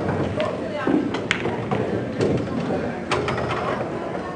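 Indistinct background voices murmuring in a large hall, with a few sharp clacks, the clearest about a second in and about three seconds in.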